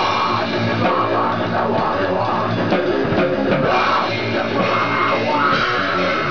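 A goregrind band playing loud and without a break: a drum kit with snare and cymbal hits under distorted electric guitar.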